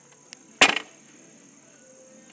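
A single sharp knock a little over half a second in, the loudest sound, over a steady high-pitched insect trilling.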